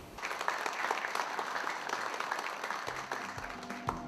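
Audience applauding: many people clapping at once, starting just after the speech ends.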